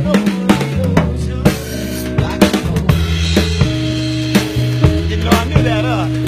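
Live band instrumental: a drum kit played with sticks, regular snare and cymbal hits over a bass line that moves every second or so.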